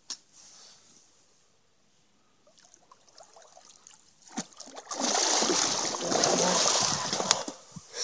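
Hooked alligator gar thrashing at the water's surface beside the boat. A few small splashes, then a loud spell of splashing lasting about two and a half seconds in the second half.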